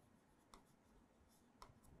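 Near silence with a few faint light ticks of a pen writing on an interactive touch-screen display.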